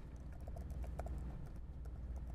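Laptop keyboard being typed on: quick, irregular key clicks over a low steady hum.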